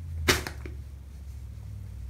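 A single sharp knock about a third of a second in, followed by a fainter tick, over a low steady hum.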